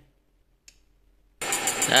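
Near silence with one faint click, then about one and a half seconds in an electric fish-shocking inverter (Tosiba Note 9999W) starts up abruptly under test load, with a high steady whine and fast, even ticking pulses.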